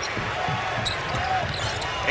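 Steady crowd noise in a basketball arena during live play, with faint shouts over it.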